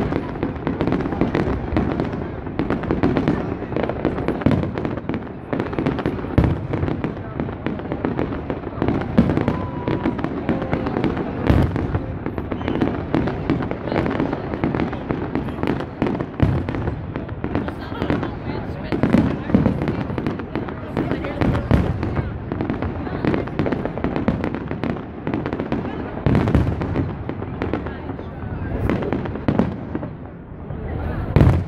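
Aerial fireworks shells bursting in a rapid, continuous string of bangs and pops, with crowd chatter underneath.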